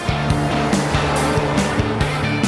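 Background music with a steady drum beat, about three hits a second, over a bass line.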